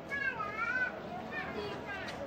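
Background outdoor voices with one high, wavering call from a child, lasting under a second near the start.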